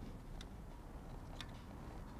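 Two faint, short clicks about a second apart from hands handling the metal frame and cam mechanism of an electromechanical digit display, over quiet room tone.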